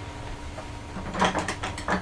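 Small hard objects being handled: a quiet moment, then a quick irregular run of clicks and rattles in the second half, as if things are picked up or rummaged for.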